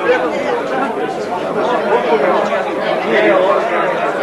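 Many voices talking at once among people seated at tables in a crowded room: a steady, unbroken hum of overlapping conversation with no single speaker standing out.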